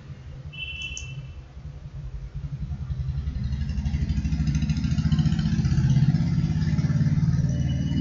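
A low, fast-pulsing engine-like rumble that builds steadily louder over several seconds, with a short, faint high beep about a second in.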